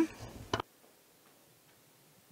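The last trace of a spoken word, a few faint clicks and a short click about half a second in, then the sound cuts off suddenly into near silence.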